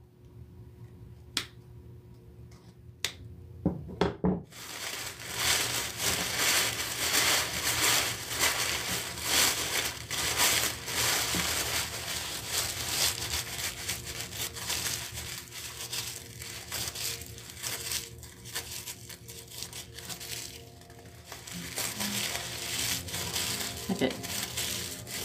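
Red tissue paper being crumpled and twisted between the hands, a dense crinkling that starts about four seconds in and keeps going. Before it there are a few separate sharp clicks.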